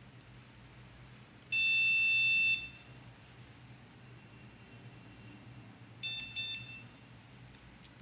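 Remote dog training collar beeping in tone mode: one long, high-pitched electronic beep, then about four seconds later two short beeps in quick succession.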